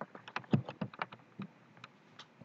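Footsteps and scrambling on rocky, stony ground while climbing: a quick irregular run of sharp clicks and knocks of shoes on loose stone and rock, the loudest about half a second in.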